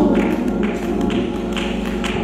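Church music with chords held steadily and light, evenly spaced taps keeping time.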